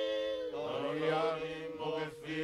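Tongan group chant from a faikava (kava-circle) song: several voices hold long sustained notes in parts, and a lower voice joins about half a second in.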